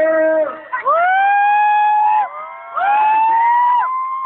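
Audience screaming in excitement: three long, high-pitched screams, each higher than the last. The second and third swoop up and hold for more than a second.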